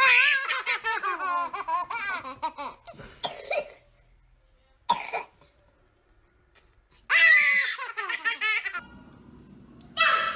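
Toddlers shrieking "Ahhh!" and laughing in two loud bursts. The first lasts about three seconds and the second starts about seven seconds in. A single sharp knock falls in the quiet between them.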